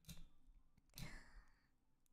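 Near silence, with a soft breath or sigh into a close, sensitive microphone about a second in.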